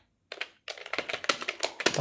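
Rapid typing on a computer keyboard: a quick run of key clicks that begins after a brief silence.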